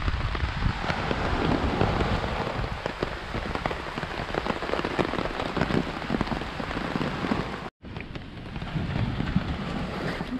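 Tropical downpour drumming on a fabric beach umbrella overhead: a dense, steady patter of drop strikes over a low rumble. The sound cuts out for a moment about three-quarters of the way through, then carries on.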